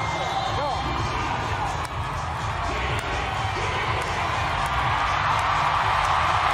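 Arena crowd noise over PA music with a steady thumping beat during a bull ride. The crowd grows louder near the end.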